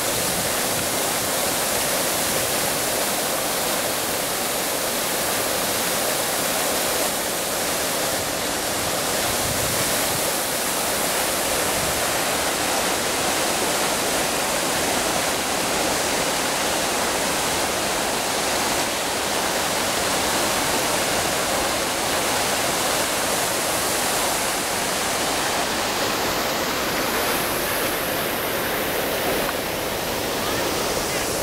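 Fountain jets of water falling and splashing into a shallow pool: a steady rushing hiss that keeps on without a break.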